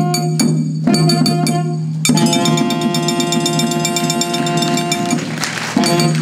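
Chindon-ya street music: a saxophone plays the melody, with one long held note in the middle, over strokes of the chindon drum rig and a big bass drum (gorosu).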